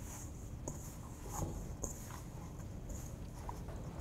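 Hands kneading crumbly pie dough in a stainless steel mixing bowl: faint, irregular soft pressing and squishing sounds with small ticks, over low room hum.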